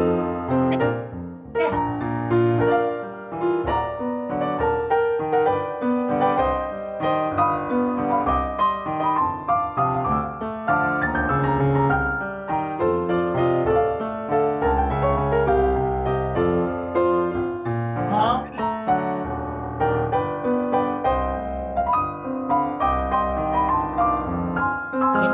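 Piano accompaniment for a ballet class, played at a steady, lilting dance tempo.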